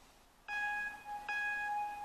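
Photo Booth countdown beeps from a MacBook Air's built-in speakers: two steady, bell-like tones, each about three-quarters of a second, one right after the other, counting down to the photo being taken.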